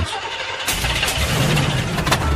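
A car engine starting, heard as a steady noisy engine sound with a low rumble, played as a sound effect.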